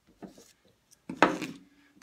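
A wooden hand tool being handled against a metal pin block: a faint rub near the start, then one sharp knock just past halfway.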